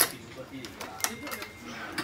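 Badminton racket string being pulled and woven through the strings of a racket on a stringing machine, with sharp clicks: the loudest right at the start, another about a second in.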